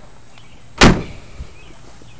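Door of a 1957 Chevrolet two-door post swung shut with one solid slam a little under a second in, closing effortlessly without being pushed, followed by a few faint ticks.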